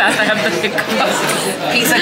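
Restaurant dining room chatter: many voices talking at once, with laughter at the table.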